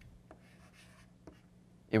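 Chalk writing on a blackboard: a brief scratchy stroke lasting under a second, with light taps of the chalk just before and after it.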